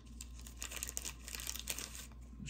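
Soft, irregular crinkling of a thin plastic trading-card sleeve being handled.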